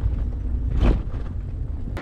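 Wind rumbling on the microphone of a bicycle-mounted camera riding over a dirt track, a steady deep buffeting with a brief clatter about a second in.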